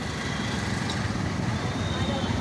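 Steady city road traffic noise around a moving bicycle: a continuous low rumble of motor vehicle engines and tyres, with a faint thin whine running through it.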